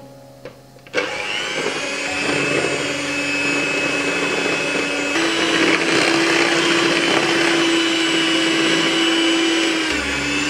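Electric hand mixer switched on about a second in, its twin wire beaters running with a steady whine as they beat flour into a creamed butter and egg-yolk batter; the whine steps up in pitch about halfway through.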